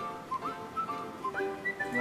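Background music: a whistled melody of short notes that slide up into pitch, over a light accompaniment.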